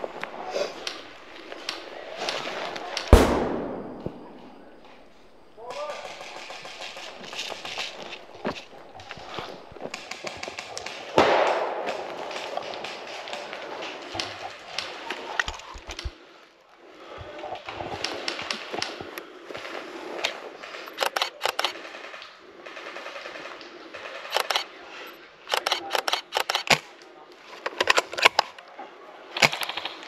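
Airsoft gunfire in a game: one loud sharp crack about three seconds in, then several short bursts of rapid clicking shots, mostly in the second half, with voices in the background.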